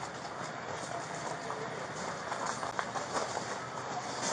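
Steady rumbling noise with faint scattered knocks and rustles, picked up by a body-worn camera's microphone as the officer wearing it moves.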